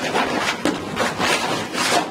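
Brown paper evidence bag rustling and crinkling as it is handled, in a series of rough scraping strokes.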